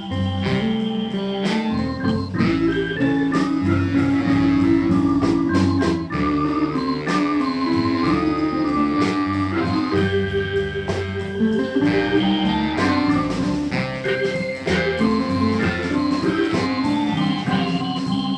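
Live band music with a Hammond SK1 stage keyboard playing organ sounds prominently, held chords and runs over a steady bass and beat, with guitar underneath.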